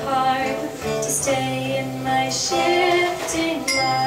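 A woman singing a slow song, accompanied by acoustic guitar and a small mallet-struck keyboard instrument. Ringing, bell-like struck notes sound near the end.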